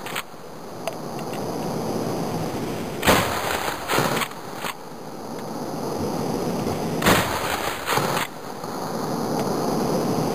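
Two blasts from a Mossberg 500 pump-action shotgun firing buckshot, about 3 s and 7 s in, each echoing briefly. Each shot is followed within a second by two sharp clacks as the slide is pumped back and forward to chamber the next shell.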